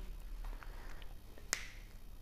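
A single sharp click of a whiteboard marker being handled, about one and a half seconds in, over faint room tone.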